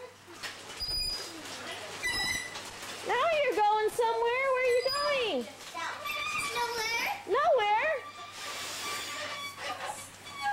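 Young children's high-pitched voices calling out while they play, with one long wavering call from about three seconds in and a shorter one near the end.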